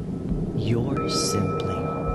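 Ambient meditation music bed: a low rumble under sweeping pitch glides, with steady high tones coming in about a second in.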